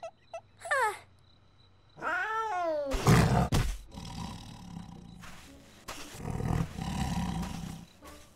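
Cartoon leopard sound effects: a cub's short high mews, then a pitched call that rises and falls. About three seconds in, a sudden loud adult leopard roar follows, then low growling that swells again near the end.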